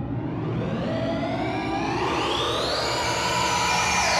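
Electronic synthesizer music: a noisy, whooshing synthesizer sweep that climbs steadily in pitch and grows slightly louder.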